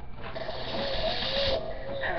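Horror trailer sound design playing back through computer speakers: a grating, mechanical-sounding noise with a wavering tone over it, easing off about a second and a half in.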